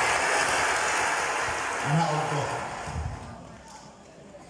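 Crowd applauding, a dense clatter of clapping that fades away over the last second or so, with a man's voice calling out briefly near the middle.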